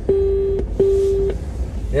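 Two identical electronic beeps inside a car, each a steady mid-pitched tone about half a second long, with a short gap between them.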